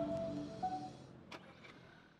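Background music with held notes fading out, dropping toward near silence, with two faint clicks near the end.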